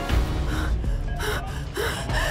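Several short, breathy gasps from a distressed person over tense drama-score music, which opens with a low hit.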